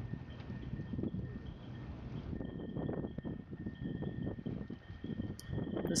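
Wind buffeting the microphone in an uneven low rumble, with a faint steady high tone underneath.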